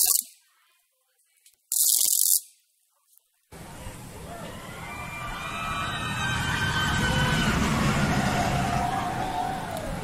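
Recorded sound effect of a roller coaster running past: a rumble that starts about three and a half seconds in, swells and then eases toward the end. A short hiss comes about two seconds in.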